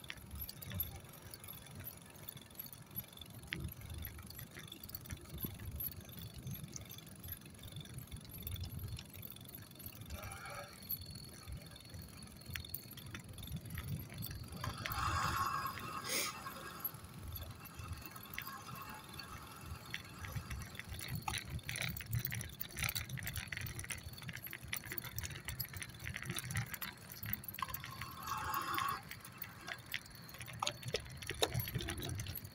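Small wheels rolling over a concrete sidewalk, with a steady clatter of rattling and jingling and irregular low bumps as the frame jolts along.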